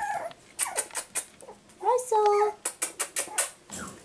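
Cavapoo puppy giving a short whine about two seconds in, among quick clicks and taps of puppy claws on a hardwood floor.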